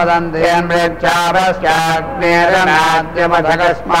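A man chanting Sanskrit Vedic mantras in short phrases held on a nearly steady pitch.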